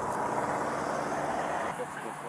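Steady road-traffic noise, a vehicle rumble and hiss with no distinct events, dropping away shortly before the end.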